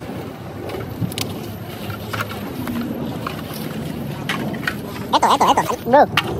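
Scattered crinkles and clicks of litter being picked up and stuffed into a plastic garbage bag, over a steady outdoor rumble. A voice calls out briefly near the end.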